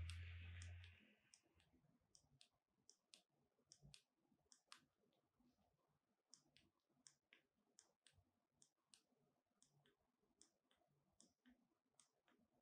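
Near silence broken by faint, scattered small clicks, with a brief louder rustle and low hum in the first second.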